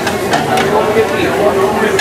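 Indistinct voices of people talking, with a few light clicks and clinks among them.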